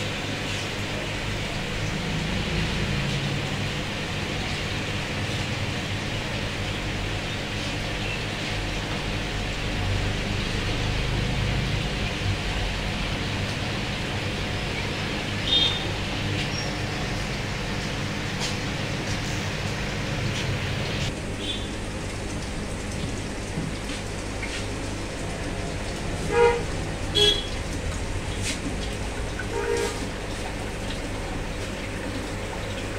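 Vehicle horns tooting in short blasts, once about halfway and twice in quick succession near the end, over a steady hum and hiss.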